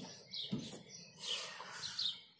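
A few short, faint bird chirps, high-pitched, over quiet background.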